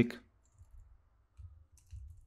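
Faint keystrokes on a computer keyboard: a few light, scattered clicks of typing.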